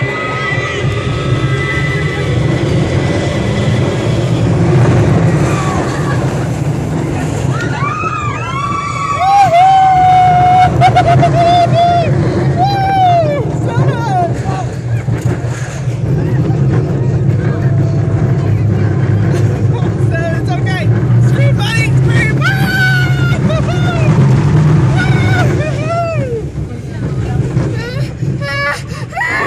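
California Screamin' roller coaster running after its launch: a constant loud rumble of the train and the wind buffeting the handheld phone's microphone, with a thin steady high whine in the first few seconds. From about eight seconds in, riders scream again and again in rising and falling cries.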